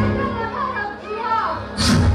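Voices and music from a jatra stage played over loudspeakers, under a steady low hum. A sudden loud hit comes near the end.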